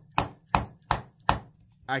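A large folding knife, the Midgards Messer Carbine Rifle Knife, locked open and struck against a wooden block, chipping it: four sharp knocks at about three a second, which stop just past halfway. The blows test the knife's stacked locks, and they hold without disengaging.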